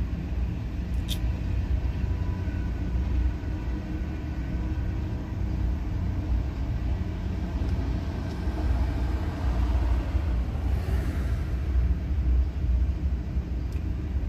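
Steady low rumble of a stationary car idling, heard from inside its cabin, with a single faint click about a second in.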